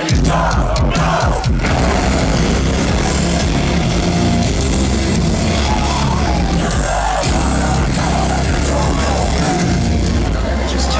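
Live metalcore band playing at full volume through a festival sound system, with heavy distorted guitars and drums, heard from inside the crowd.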